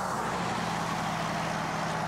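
Pickup truck approaching along a highway: steady engine hum with tyre noise on the pavement.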